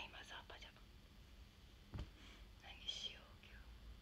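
A young woman speaking very softly, almost in a whisper, in short phrases, with a faint click about two seconds in.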